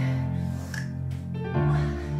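Background music with sustained bass notes and a few percussive hits.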